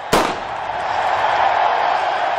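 A starting pistol fires once, sharply, right at the start of a sprint, followed by a stadium crowd cheering and growing louder.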